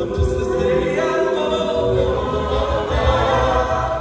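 Mixed a cappella choir singing live, the voices holding sustained chords over a low bass part that pulses underneath.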